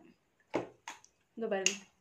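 Two short, sharp clicks about a third of a second apart, then a brief spoken word.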